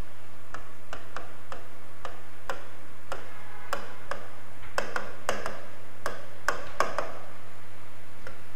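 Marker pen tapping and clicking on a writing board as words are written by hand: a string of short, irregular ticks, coming faster for a few seconds after the middle. A steady low electrical hum runs underneath.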